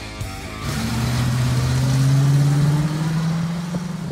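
A car accelerating past, its engine note rising steadily in pitch, swelling to its loudest about two seconds in and fading near the end.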